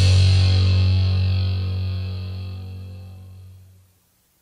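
Last bass guitar note of a hardcore punk song ringing out with the drums' final cymbal crash, fading steadily and dying away to silence just before the end.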